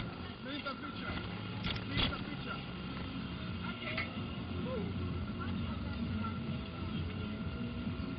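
Amusement-park ride ambience: a steady mechanical hum under indistinct voices and faint background music, with a couple of sharp clicks about two seconds in.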